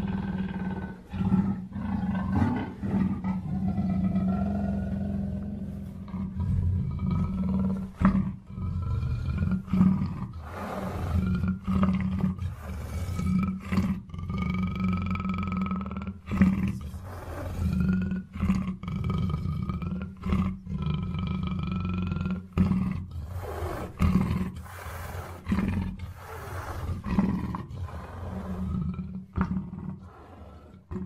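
Big-cat roars from a sound-effect track, deep and continuous, broken by many sharp hits, with higher tones that slide up and down over them.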